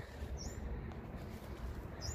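A bird gives one short, faint, high chirp about half a second in, over a low steady rumble.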